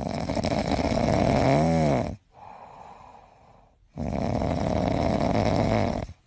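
A sleeping cat snoring: two long, loud snoring breaths of about two seconds each, with a quieter breath between them. A brief pitched tone rises and falls near the end of the first.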